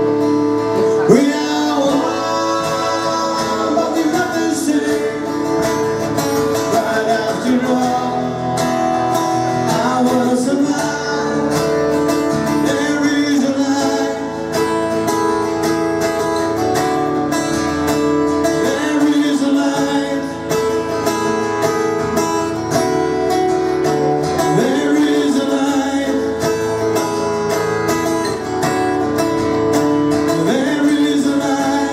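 Two guitars, a resonator guitar and a red acoustic-electric guitar, played live together, amplified through the stage sound system, with sustained notes and a few sliding notes.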